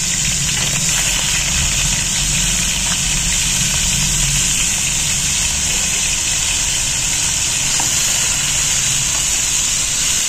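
Raw minced meat sizzling in hot oil in a pan, just after being added, as a steady high hiss. A steady low hum runs underneath.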